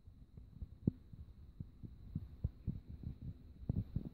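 Irregular low thumps and bumps of handling noise, a few a second with a cluster near the end, over a faint steady high-pitched whine.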